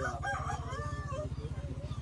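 A rooster crowing once over the steady low running of an idling motorcycle engine.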